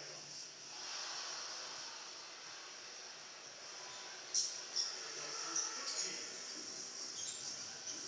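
Basketball game on a TV: athletes' sneakers squeaking on the court several times near the middle, over a faint broadcast voice.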